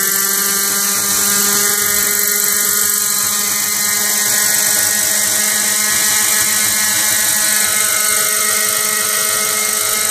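Raptor 50 radio-controlled helicopter's two-stroke glow engine running at steady hovering speed with its rotors turning, holding one unchanging pitch over a high hiss.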